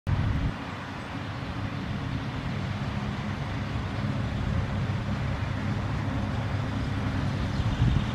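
A steady low rumble with a fainter hiss above it, of the kind left by wind on the microphone or distant traffic; no bird calls stand out.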